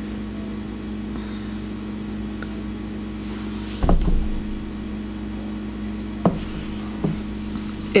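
Steady low hum, with one dull thump about halfway through and two faint taps near the end.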